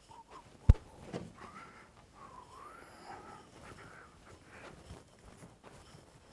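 A folding metal step stool being grabbed and handled: one sharp clack less than a second in, a softer knock just after, then faint squeaks and handling noise as it is moved.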